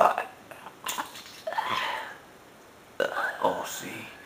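Wordless vocal grunts in several short bursts with pauses between them.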